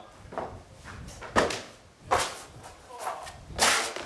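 Trainers scuffing and striking concrete: a few sharp footfalls on a run-up, then a louder impact near the end as a freerunner lands on paving after a drop from a walkway.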